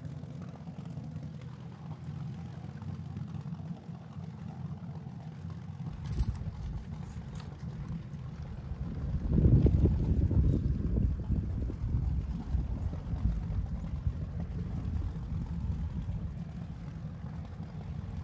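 Low rumble of wind buffeting the microphone, swelling louder about nine seconds in and then easing.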